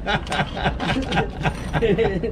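Men talking in Spanish, indistinct, with a steady low background hum.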